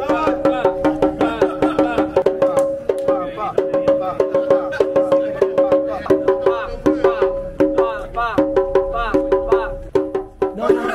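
Candombe tambor drum played by hand in a quick, steady rhythm of sharp strokes, several a second, each ringing at the same few fixed pitches.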